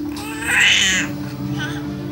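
Young baby crying: one loud, high-pitched wail about half a second in, followed by a shorter, fainter whimper.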